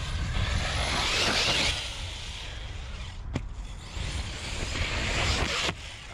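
An Arrma RC truck runs hard over loose dirt: a noisy rush of tyres and dirt, strongest in the first two seconds, over a steady low rumble. A sharp knock comes about three seconds in.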